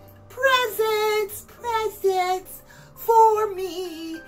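A woman singing a Christmas song in a series of held notes with vibrato, over a faint backing track of sustained tones.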